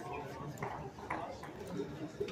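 Indoor bowls hall background: a murmur of distant voices with a few short sharp clicks of bowls knocking together on the rinks.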